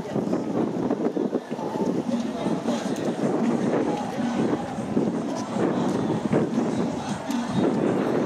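Indistinct chatter of several people talking outdoors, with wind on the microphone.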